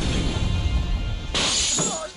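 Action-film soundtrack under film music: a heavy low rumble of a car crash, then, about one and a half seconds in, a short burst of car windshield glass shattering.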